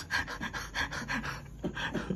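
Breathless, wheezing laughter from an elderly woman, coming as a quick run of panting breaths, about five a second.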